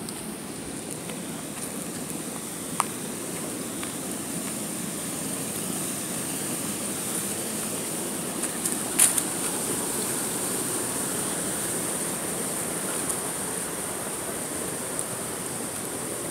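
Steady rush of flowing water from a small rocky stream, with two short sharp clicks about three and nine seconds in, the second the louder.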